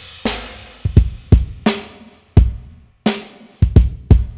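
A sampled hip-hop drum beat playing back from the MPC, with a layered kick drum and snare hits. The added second kick layer plays without its EQ, so it has not yet been cut to the mids for small speakers.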